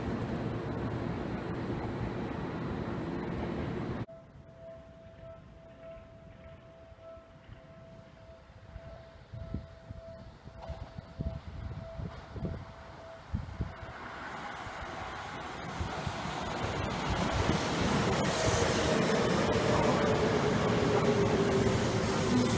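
Seibu 20000-series electric train approaching and passing close by, its running noise building steadily over the last several seconds with a falling whine as it goes past. Before it arrives, a level-crossing warning bell pulses faintly and evenly; the first few seconds hold steady rail-yard background noise, cut off abruptly.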